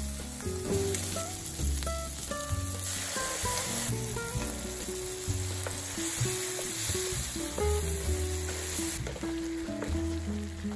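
Sausage, onion and green pepper sizzling in a frying pan while being stir-fried, with the sizzle getting stronger about a third of the way in and again after tomato ketchup sauce goes in and is stirred with a wooden spatula. Soft background music with steady held notes runs underneath.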